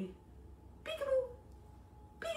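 One short, high-pitched vocal sound about a second in, falling in pitch, over a low steady room hum.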